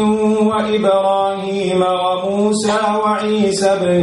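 A man reciting a verse of the Quran in Arabic, chanted in long held melodic phrases with short breaks between them.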